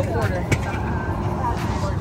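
Steady low drone of a Boeing 737-800's cabin, with a sharp click about half a second in.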